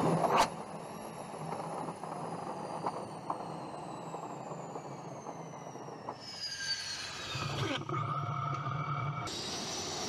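F-15E Strike Eagle's twin jet engines whining, the high whine falling slowly in pitch as the jet is slowed by a runway arresting cable. A rougher engine sound with a few steady tones takes over in the second half.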